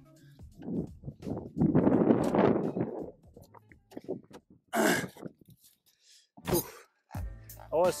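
Wind gusting over the microphone for a second or two, then a few short knocks and rustles.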